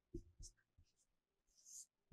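Faint marker strokes on a whiteboard: a few short, soft scratches in near silence, with a slightly longer faint stroke near the end.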